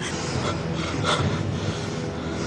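Steady engine drone inside a small aircraft's cabin, with a person breathing out heavily about a second in.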